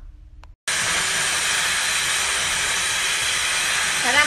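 Handheld hair dryer blowing with a steady, even rush of air. It starts abruptly about half a second in, after a moment of quiet.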